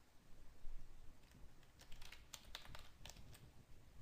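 A quick run of faint computer keyboard key clicks, bunched between about two and three and a half seconds in, over quiet room tone.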